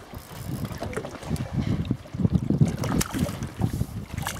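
Wind buffeting the microphone in uneven gusts over water lapping against the side of a small boat.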